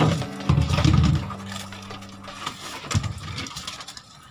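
Deck work with plastic fish baskets: knocks as a basket is handled, a loud low rumble about half a second in, and another knock near three seconds, over a steady low machine hum that fades out midway.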